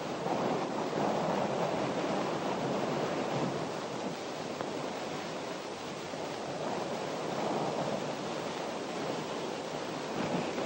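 Steady rushing wind on an old film soundtrack, swelling and easing gently.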